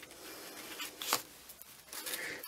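Soft rustling and sliding of paper as hands handle the pages and a card tag of a handmade junk journal, with a brief sharper swish about a second in.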